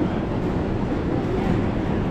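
Steady city street ambience: a low rumble with an even wash of noise and faint distant voices.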